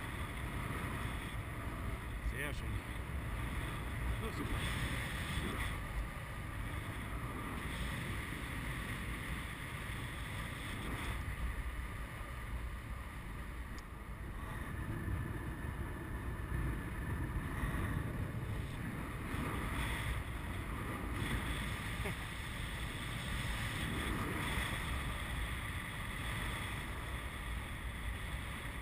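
Wind rushing over the microphone of a camera on a tandem paraglider in flight, a steady low rumbling noise that swells and eases slowly.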